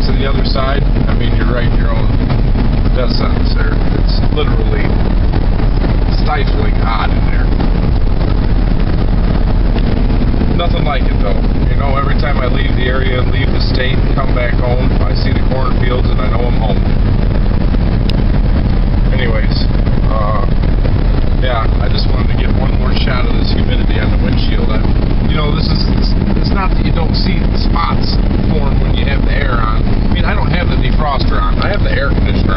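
Steady engine and road noise heard from inside a moving vehicle's cabin, with faint voice-like sounds over it at times.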